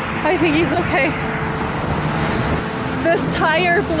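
Steady freeway traffic noise from passing cars and trucks, with a voice speaking briefly over it near the start and again near the end.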